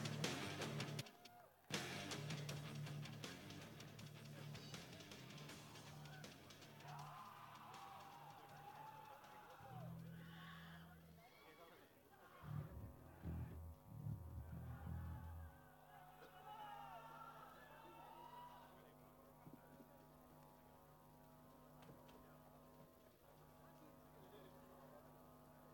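Loud music cuts off about a second in, leaving a faint lull at a live rock concert: scattered crowd voices and whoops, a few seconds of low bass or kick-drum strokes near the middle, then a steady amplifier hum through the rest.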